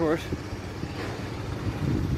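Steady low rumble of outdoor airport-apron noise, with no single machine standing out. The tail of a man's voice is heard at the very start.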